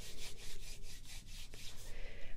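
Brisk rhythmic rubbing, about six hissy strokes a second, used as an ASMR sound.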